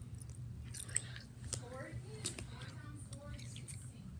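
Someone chewing snack food close to the microphone, with small wet mouth clicks, over a steady low hum; faint voices are heard briefly in the middle.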